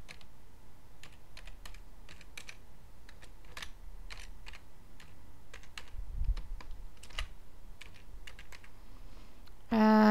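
Typing on a computer keyboard: irregular keystrokes, with a brief low thump about six seconds in.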